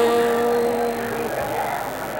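An elderly woman chanting Buddhist verse in a slow sung style holds one long steady note, which fades out about a second and a half in. Only faint room sound remains after it.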